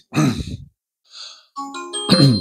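A man sighs with a falling pitch. About a second and a half in, a Sonoff NSPanel Pro smart-home panel starts a short electronic chime of several held tones, its startup sound as it reboots after a system update.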